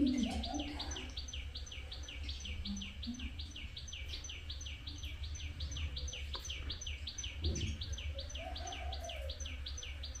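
A small bird repeating a high, quick chirp that falls in pitch, about four times a second without a break, over a low steady hum.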